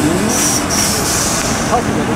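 Decorated flatbed truck driving slowly with its engine running, and two hisses of compressed air from its air brakes, the first short and the second longer.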